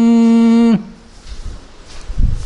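A man's singing voice holds one long steady note of a Tamil devotional song, then lets it fall away with a short downward slide less than a second in. Then there is a pause with only faint low background noise.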